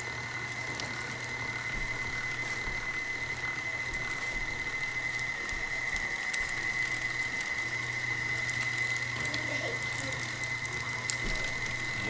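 KitchenAid stand mixer running its meat grinder attachment, grinding wild boar meat for sausage: a steady motor and gear whine with a high tone held throughout.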